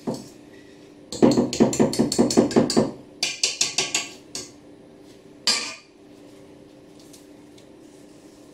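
Wire whisk beating cake batter in a stainless steel mixing bowl, rapid clattering strokes against the metal at about six a second. Two runs, the first about a second and a half long and the second about a second, then a single scrape against the bowl about five and a half seconds in.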